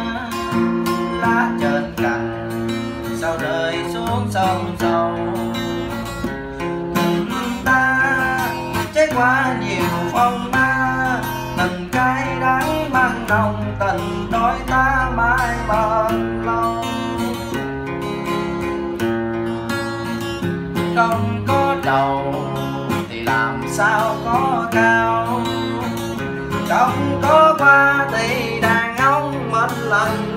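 Music: an acoustic guitar song, the guitar playing steadily under a wavering melody line.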